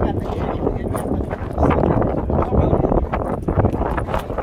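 A group of people laughing and talking, with wind buffeting the microphone.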